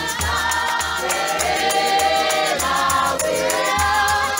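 A church congregation singing a hymn together in many voices, with a steady low beat underneath.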